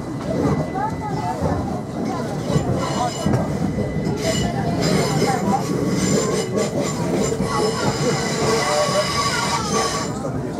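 Electric passenger train pulling out of a station, heard inside the carriage: steady running and wheel noise, with a high steady whine that grows stronger about four seconds in. Passengers talk in the background.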